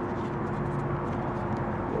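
A steady low hum from a motor running in the background, with faint light ticks of cardboard being folded by hand.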